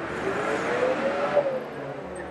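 A road vehicle's engine revving up in street traffic, its pitch rising steadily for about a second and a half and then dropping, over steady traffic noise.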